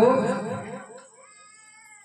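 A man's voice drawing out the last word of a sung line in a devotional story, the note bending and fading away within about a second. A faint steady held tone lingers after it.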